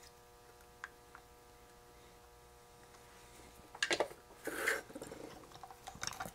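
Soldering iron at work on header pins for small SMD adapter boards. A couple of light clicks come first, then short hisses and scrapes about four seconds in, over a steady faint hum.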